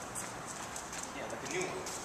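A dog's claws clicking on a concrete floor as it moves quickly, a run of short taps, with faint voices in the background.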